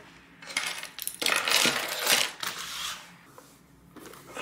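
Coach Dakota leather bucket bag being handled on a table, its gold-tone metal clips and hardware clinking and jingling amid leather rustle; the loudest stretch falls in the middle.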